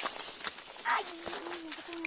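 People's voices at a low level: a short voiced sound about a second in, then a held, drawn-out low hum or vowel, with a few scattered light clicks.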